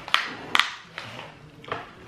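Plastic cookie packaging crackling as it is handled: two sharp crackles near the start, then a few fainter ticks.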